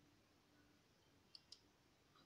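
Near silence broken by two faint, short clicks about a second and a half in, a fraction of a second apart.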